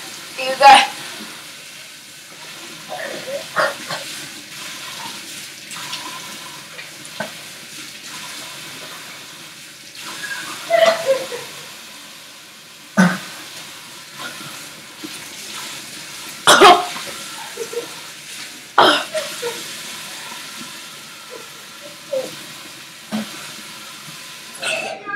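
A person coughing, gagging and heaving in sudden loud fits several times, the body's reaction to choking on a dry mouthful of cinnamon. A steady rushing noise runs underneath.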